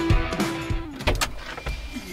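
Background music with a steady beat that fades out about a second in, followed by two sharp clicks close together.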